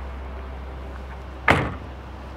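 A car's rear liftgate being pulled down and shut with a single solid thud about one and a half seconds in, heard from inside the cargo area.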